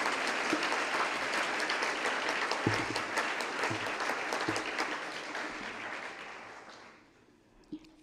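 Audience applauding, a dense patter of many hands clapping that gradually dies away, fading out about seven seconds in.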